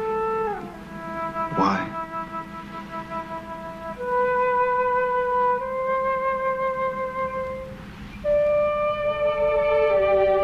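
Film score music: a slow melody of long held notes, each lasting one to four seconds, some sliding down in pitch into the next note. A quick upward sweep cuts across it about two seconds in.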